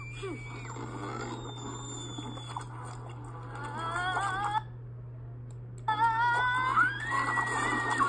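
Film soundtrack playing through laptop speakers and picked up by a phone: background music with drawn-out, rising high voices, broken by about a second of quiet midway, over a steady low hum.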